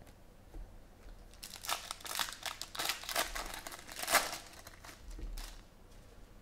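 A foil trading-card pack being torn open and its wrapper crinkled by hand: a dense run of crackles from about a second and a half in until near the end, sharpest around four seconds in.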